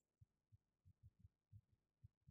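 Near silence, with a few very faint, short low thuds.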